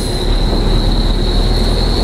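Steady low rumble of a car driving slowly, heard from inside the cabin, with a thin steady high whine over it.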